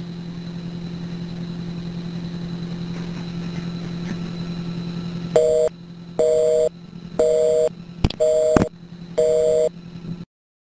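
Telephone line after dialing: a steady low hum for about five seconds, then a busy signal, five short two-tone beeps about one a second, meaning the called number is engaged. Two sharp clicks on the line come around the third and fourth beeps.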